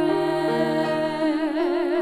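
Female voice singing a gospel duet, holding a note with vibrato over sustained keyboard accompaniment chords.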